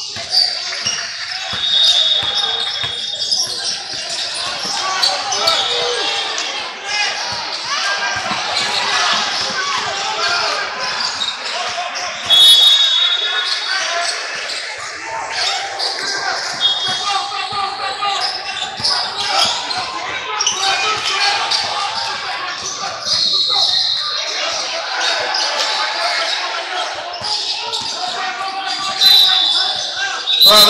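Basketball play on a hardwood gym floor: the ball bouncing, sneakers squeaking in short high squeals several times, and voices of players and spectators calling out, all echoing in a large hall.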